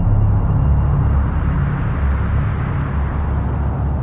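Dark cinematic sound design: a loud, deep rumbling drone with low held tones and a rushing noise above them, without a break.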